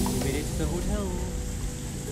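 Voices talking, low in level, over a steady outdoor background noise.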